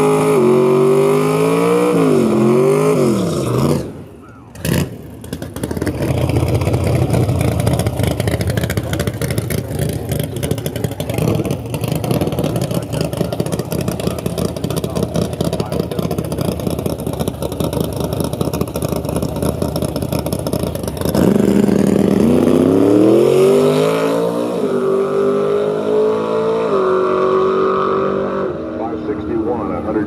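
A naturally aspirated Ford Fairlane drag car's V8 revs as the burnout ends and dips briefly. It then runs rough and loud while staged, and about 21 s in it launches at full throttle, its pitch climbing in steps through the gears before fading into the distance near the end.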